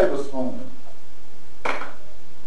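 A brief bit of voice at the start, then about a second and a half in a single short clink of a kitchen utensil against a dish.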